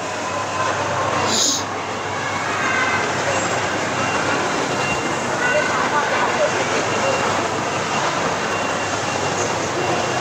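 Busy indoor shopping-mall ambience: a steady rushing hum with faint distant voices, and a brief hiss about a second and a half in.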